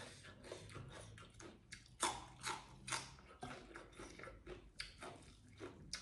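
Close-up biting and chewing of a raw long bean: a run of crisp crunches, strongest about two to three seconds in.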